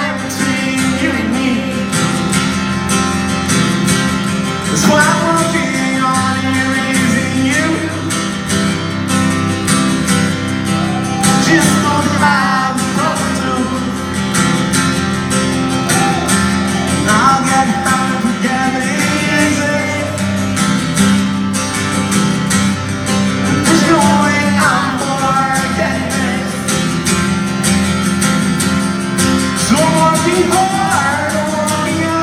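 Live acoustic guitar strummed steadily, with a voice singing over it at intervals in long, wavering notes.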